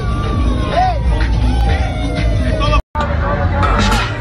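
Loud street-party music with heavy bass, voices shouting and calling over it. The sound drops out for an instant about three-quarters of the way through, then the music and crowd come back.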